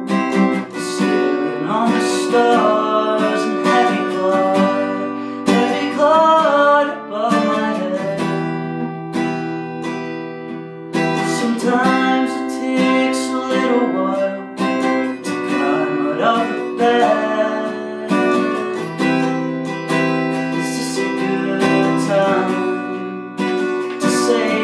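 Acoustic guitar strummed in chords, with a man's voice singing over it in phrases that come and go.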